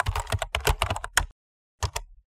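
Computer-keyboard typing sound effect: a fast run of key clicks lasting about a second and a half, then a short second burst near the end, matching on-screen text being typed out letter by letter.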